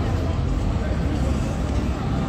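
A loud, steady low rumble with a faint murmur of voices over it.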